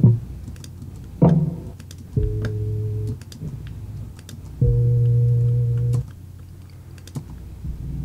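One-shot drum samples recorded through a C1 Library of Congress cassette player at half speed, played back one at a time: a short low thump, a pitched hit about a second in, then two deep low notes that each hold for about a second. Light computer clicks sound between the hits.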